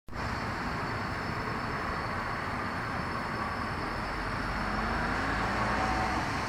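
Steady outdoor city traffic noise, an even hiss over a low rumble. A faint engine note rises in the second half.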